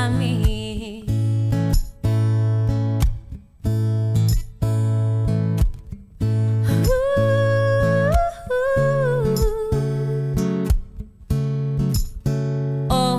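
Music: a woman singing, holding a long note partway through and then stepping down, over rhythmically strummed acoustic guitar with brief regular breaks.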